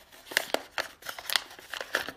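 Pleated A4 paper mask crinkling and crackling in a series of short sharp crinkles, about six, as its folds are pulled open by hand.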